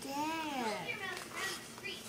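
A young child's voice: one long drawn-out sound that rises and then falls in pitch, followed by a few short babbled syllables with no clear words.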